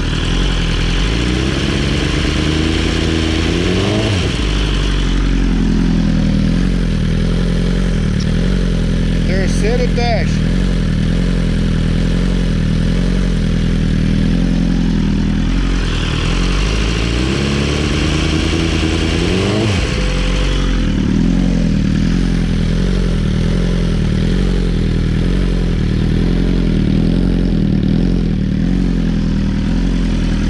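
BMW S1000RR inline-four engine running in neutral through a short titanium aftermarket exhaust with its dB-killer baffle removed, loud and steady. Its pitch climbs twice, in the first few seconds and again about seventeen seconds in, as the revs are raised and held for a stationary noise test.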